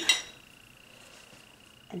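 Quiet room tone with a faint, steady high-pitched whine, between two spoken words.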